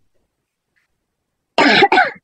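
Silence, then near the end a person coughs twice in quick, short bursts.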